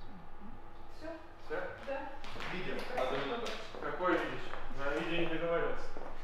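People talking.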